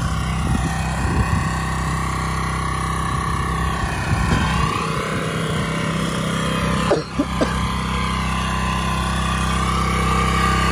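Engine of an 8-horsepower Iseki walk-behind bed-forming machine running steadily.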